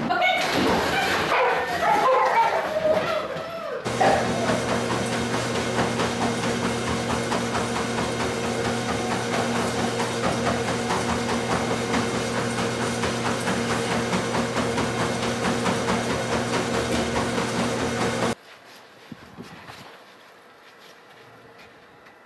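Dogs barking and whining for about four seconds, then a treadmill running with a steady motor hum as a puppy walks on its belt. The hum stops suddenly near the end and a much quieter background follows.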